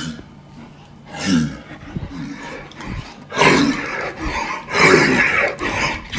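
A man's loud wordless vocal noises in several bursts: one about a second in, then a run of louder ones from about three seconds on.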